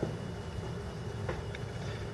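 Low, steady background rumble of the room and sound system in a pause between speech, with a faint click a little over a second in.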